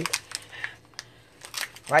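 A few scattered light clicks and taps of kitchenware being handled while coffee is being made.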